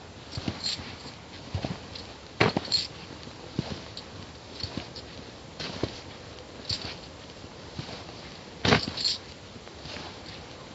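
Footsteps of boots on a gritty concrete path: short scuffing steps about once a second, with two louder ones, about two and a half seconds in and near the end.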